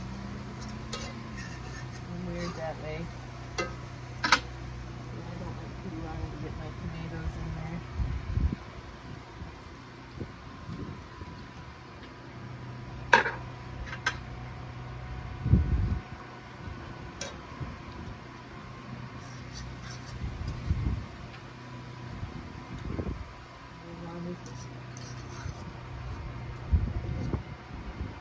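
A cooking utensil scraping and tapping in a frying pan as sausage and onions are turned, giving scattered sharp clicks and a few low knocks over a steady low hum.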